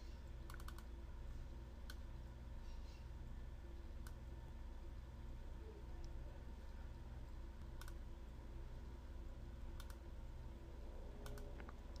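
A few faint, scattered clicks from working a computer's mouse and keyboard, with a pair near the start, over a steady low electrical hum.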